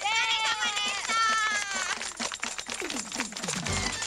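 Women cheering and laughing in high voices while clapping their hands rapidly. A music track with a low beat comes in near the end.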